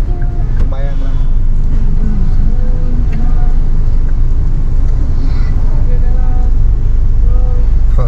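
Steady low rumble of a car idling, heard from inside the cabin, with faint voices in the background.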